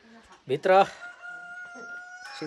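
A rooster crowing: the call starts about half a second in and ends in one long, steady held note.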